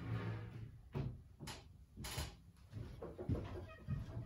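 A fruit machine glass panel laid down flat on a wooden workbench, followed by a series of short knocks and rustling handling noises.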